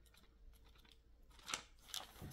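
Quiet rustling of book pages being handled and turned, with a brief louder rustle about one and a half seconds in and another near the end.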